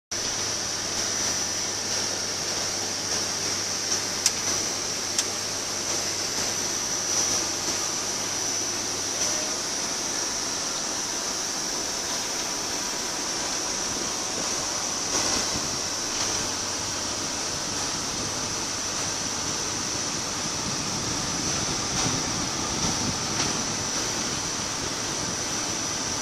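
Steady rushing noise inside a moving car's cabin: road and wind noise, with a low hum through the first part and two brief clicks a few seconds in.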